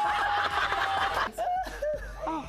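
Several people laughing hard, with one voice holding a long high note over the laughter, cut off suddenly just over a second in; short bits of speech follow.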